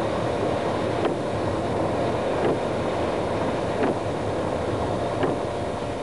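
Steady running noise of a moving vehicle: an even engine and road rumble with a few faint clicks.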